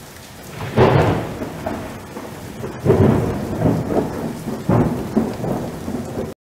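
Thunderstorm: steady rain with rolls of thunder swelling up about a second in, again near three seconds and near five seconds.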